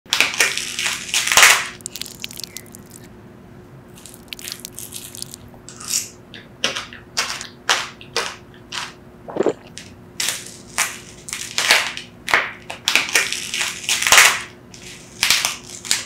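The hard, brittle shell of a granadilla (sweet passion fruit) cracking and breaking apart in the fingers, in clusters of sharp crackles and crunches. The loudest come about a second in and again near the end, with smaller crunches of eating the seedy pulp in between.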